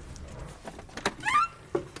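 A door being opened: a latch click about a second in, followed straight away by a short rising squeak from the hinge.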